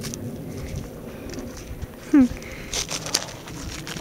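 Soft rustling and scuffing of a dog's steps through dry brush and dirt, with a few sharper scuffs past the middle. A person gives a brief 'hmm' about halfway through.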